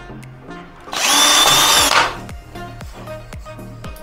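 Cordless drill running for about a second with a steady high whine as its bit bores into a door jamb.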